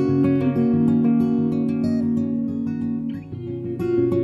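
Acoustic guitar playing chords in an instrumental passage of a song. One chord is left ringing for a couple of seconds, then the playing dips briefly near the end.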